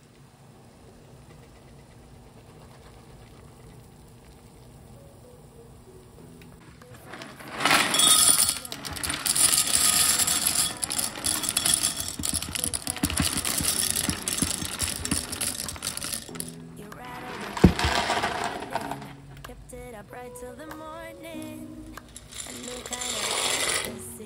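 Dry penne pasta poured from a plastic container into a glass measuring cup: a dense clatter of hard pieces rattling against the glass for about nine seconds, starting about seven seconds in. Faint steady noise of a pot of water heating on the stove comes before it. One sharp knock follows the clatter, and quieter noise rises near the end as the pasta is tipped into the boiling water.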